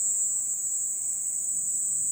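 A chorus of night insects, giving one steady, high-pitched continuous trill.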